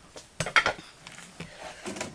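A few light clicks and knocks, clustered about half a second in, with another soft knock near the end.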